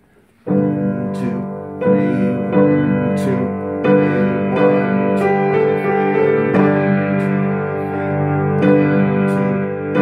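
Howard piano played with both hands, coming in suddenly about half a second in with full, sustained chords, a new chord struck every second or so.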